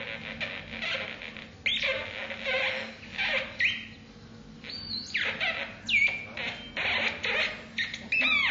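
Electronic squeaks and chirps from a small hand-held box instrument played with the fingers. They come in short, sudden bursts, some with a quick pitch glide downward, with a quieter gap about halfway through.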